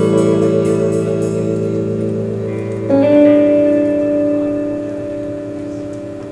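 Live band's guitars, with a pedal steel guitar among them, ringing out held chords with no singing. One chord fades slowly, then a new chord comes in with a short upward slide about three seconds in and dies away.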